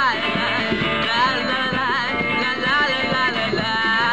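A live band playing: upright double bass, drums and guitar, with a high wavering melody line on top.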